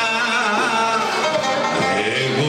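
Live Greek band music, led by a plucked string instrument, with a wavering melody line over a steady accompaniment.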